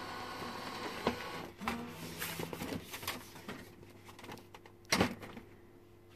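Epson WP-4545 inkjet printer's mechanism running through its start-up cycle after being switched on: a steady motor whir at first, then a short motor whine and a run of clicks, with one sharp knock about five seconds in.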